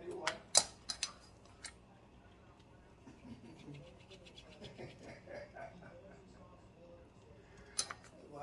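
A handful of sharp clicks and taps from kitchenware at a steel stockpot in the first two seconds, then a quiet stretch, and one more click near the end.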